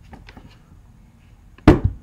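A single sharp knock near the end, the loudest sound, with a short low ring after it, preceded by a few faint small clicks.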